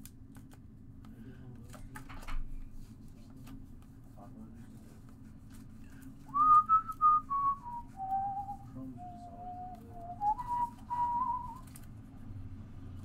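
A man whistling a short, wandering tune, one clear note that starts about six seconds in, steps down and comes back up near the end. Before it come soft clicks of plastic-sleeved trading cards being handled and stacked.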